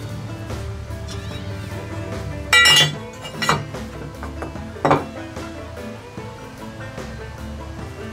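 A metal speed square clinks sharply with a brief ring as it is handled against a wooden post, followed by a couple of lighter knocks. Background music plays underneath.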